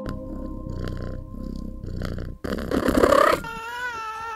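Domestic cat purring in a low, steady rumble. About two and a half seconds in comes a louder rough burst, followed by a drawn-out, wavering cry.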